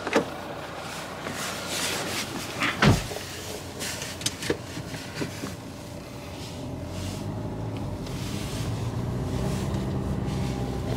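Handling knocks and a single sharp thump about three seconds in as someone gets into a car, then the car's engine running steadily and a little louder from about halfway through as the car moves off, heard from inside the cabin.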